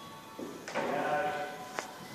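A person's voice speaking or calling, with faint music underneath, and one sharp click near the end.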